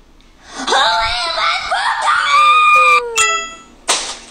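A high-pitched voice screaming for about two and a half seconds, its pitch wavering and then sliding down, followed by a sharp click near the end.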